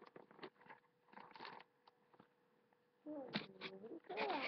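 Faint rustles and small knocks of dolls being handled, then about three seconds in a child's wordless play-voice that slides up and down in pitch.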